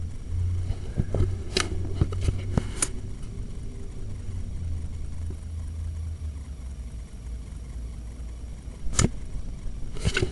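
Sewer inspection camera and its push cable working through a cast iron drain: a low steady rumble that stops about six seconds in, with a cluster of sharp clicks and knocks between one and three seconds in and one loud knock near the end.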